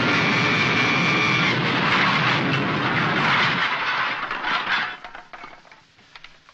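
Cartoon crash sound effect: a loud, noisy clattering tumble of falling junk, lasting about four seconds before it dies away.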